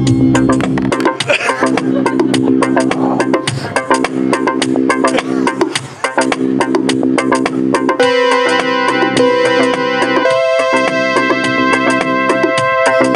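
Yamaha electronic keyboard playing held chords over a fast clicking percussion pattern. A brighter sustained voice comes in about eight seconds in.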